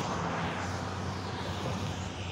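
Steady distant engine rumble, with no sharp events, easing off slightly near the end.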